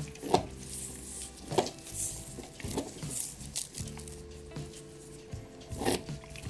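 Cuckoo clock weight chains clinking and rattling in a few short bursts as the tangled links are worked loose by hand, over soft background music.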